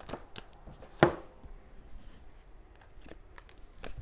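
Tarot cards being handled and laid on a table: scattered light clicks and taps, with one sharper snap about a second in.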